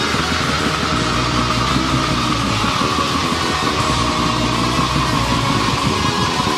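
Raw black metal from a 1998 cassette demo: a dense wall of distorted electric guitar, rough and lo-fi, at an even loudness throughout. A high held tone sinks slowly in pitch over the whole stretch.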